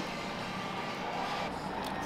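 Steady low background noise of a restaurant dining room, with a faint click near the end.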